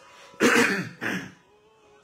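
A man coughing into his fist to clear his throat: one loud cough about half a second in, then a shorter, quieter one.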